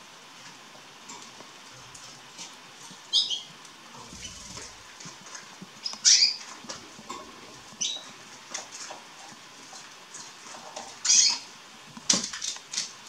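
Young canaries giving scattered short, high chirps, most sweeping downward in pitch, the loudest about six and eleven seconds in, with soft clicks and rustles in between.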